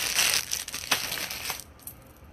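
Small clear plastic jewelry bag crinkling as it is handled and opened, with a couple of light clicks; the crinkling stops about one and a half seconds in.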